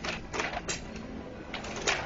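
A few sharp ticks or taps, about five spread unevenly over two seconds, over faint background noise.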